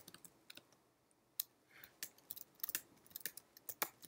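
Computer keyboard keys clicking in an uneven run of separate keystrokes as text is typed and then deleted with repeated backspace presses.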